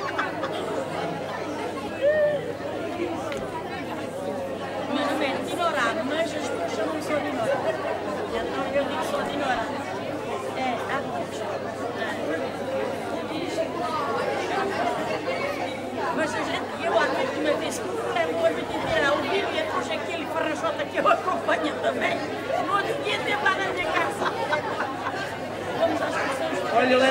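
Many people talking at once in a large hall: a steady babble of overlapping conversation, with no music playing.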